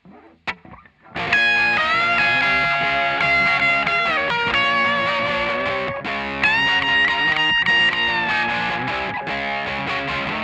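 Electric guitar playing a short lead solo over a backing track, after a single sharp click about half a second in. The lead holds bent notes that bend back down about four seconds in, with a fresh bend up about six and a half seconds in.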